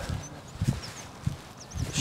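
Footsteps on frosty grass, three soft steps about half a second apart, with a few faint, high bird chirps.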